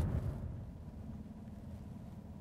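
Faint, steady low rumble of the 2015 GMC Yukon driving down the road, easing down over the first half second and then holding level.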